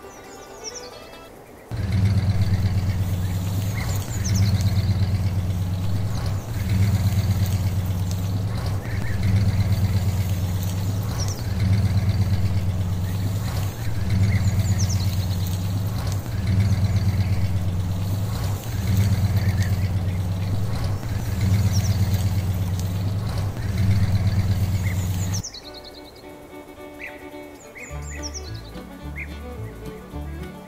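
A tractor engine running steadily with a low pulsing note that swells and dips in even surges about every two and a half seconds. It starts about two seconds in and cuts off suddenly near the end, with birds chirping throughout.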